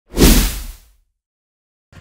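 A single whoosh sound effect with a deep low hit underneath, swelling quickly and fading out within about a second: the news programme's logo sting.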